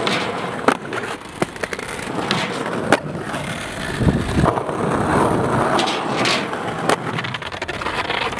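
Skateboard on a flat bar and a stone plaza: several sharp clacks of the deck and trucks over the rumble of wheels rolling on marble paving, as the skater bails and the board runs loose.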